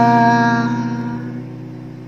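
A man's voice holding the last sung syllable of a line over an acoustic guitar chord left ringing, with no new strums. Both fade steadily away over about two seconds.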